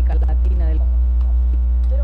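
Loud, steady low mains hum in the audio, with faint speech from the played clip in the first moments and again near the end.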